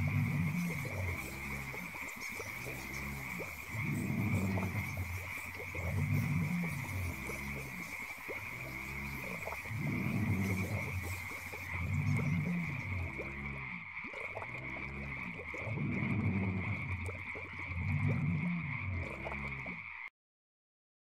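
Background ambience track of low calls that swell about every two seconds over a steady high trill, cutting off suddenly at the end.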